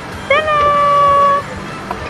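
One drawn-out, high-pitched excited cry from a human voice, a quick rise held for about a second, like a long 'whoa'.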